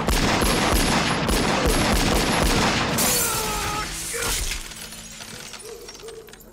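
A long burst of rapid gunfire, shot after shot for about three seconds. It gives way to a crash of shattering glass that dies away.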